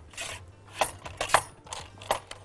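Dishes and kitchen utensils clinking and knocking against each other in a handful of sharp strikes, two of them close together just past halfway.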